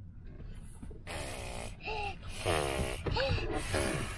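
Several short, breathy, wordless voice sounds, hums and puffs of breath, starting about a second in.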